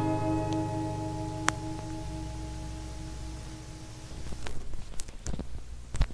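An acoustic guitar's final strummed chord rings out and slowly fades, with one light click about a second and a half in. Near the end come irregular knocks and rustling from handling the camera.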